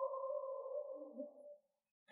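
A faint synthesized tone holding two steady pitches, with a brief lower note about a second in. It fades out about a second and a half in. It is an edited-in dramatic sound-effect sting.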